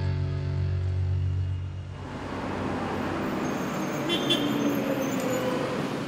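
Background rock music ends about two seconds in and gives way to the steady noise of city road traffic.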